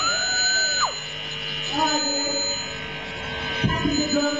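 Live band music through a PA, a singer's amplified voice holding one long note that drops away just under a second in, then singing again, over a steady faint high whine.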